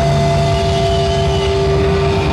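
Heavy metal band playing live, amplified through a PA: distorted electric guitars hold a sustained note over rapid drumming.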